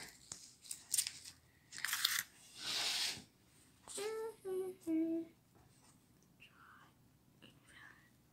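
Paper baking liner crinkling and tearing as it is peeled off a small bread roll, in a few crackly bursts. A little after halfway there are three short hummed 'mm' sounds of someone tasting.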